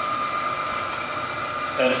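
Steady whir of machinery in a wood chip boiler plant room, with a constant whine running through it.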